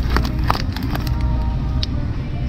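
A plastic bag of sesame seeds crinkling, with a few sharp crackles, as it is handled and pulled off a store shelf, over a steady low hum.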